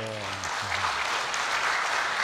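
Audience applauding: an even wash of many hands clapping that starts with the window and holds steady throughout, over a man's brief "so, so" at the start.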